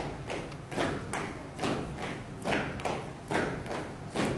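Footsteps of a column of people marching in step on a hard floor, a thump roughly every half second.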